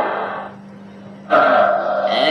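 A man's voice trails off into a brief lull with a low steady hum, then a loud drawn-out vocal sound starts suddenly about a second and a half in.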